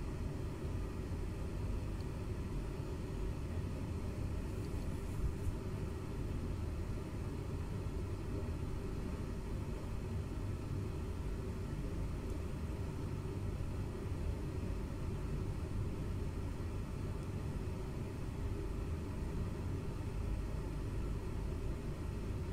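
Steady low background rumble with no distinct event, apart from a faint brief sound about five seconds in.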